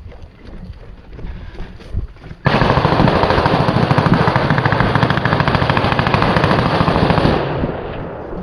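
Heavy automatic gunfire at close range breaks out suddenly about two and a half seconds in, a continuous rattle of rapid shots that keeps up for about five seconds and then tapers off.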